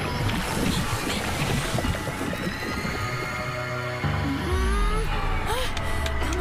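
Water sloshing and splashing around a swimming cartoon girl, under dramatic background music. Near the end, her frightened whimpering cries rise and fall in pitch.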